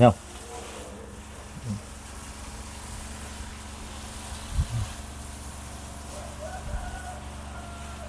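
A steady low buzzing hum runs throughout, with a few soft low thumps spread through it.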